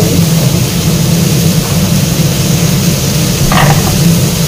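A steady low drone in the kitchen with a faint sizzle from shrimp and vegetables frying in the wok, and one brief knock about three and a half seconds in.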